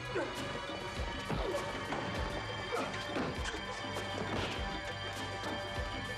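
Fight sound effects: an irregular run of punches, thuds and crashes of bodies against a boat's cabin and deck, with grunts, over tense background music.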